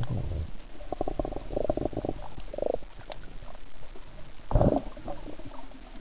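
Muffled, rumbling underwater sound of a snorkeler breathing through the snorkel: a few short buzzy breath noises, then a louder gush about four and a half seconds in.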